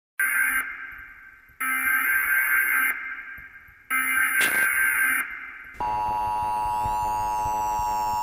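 Electronic broadcast-style sound effect: three sharp electronic tones with a hiss, each fading away over about a second, followed about six seconds in by a steady electronic buzzing tone with faint sweeping whistles above it.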